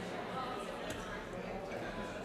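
Chatter of a congregation: many voices talking over one another as people greet each other, with a small click about a second in.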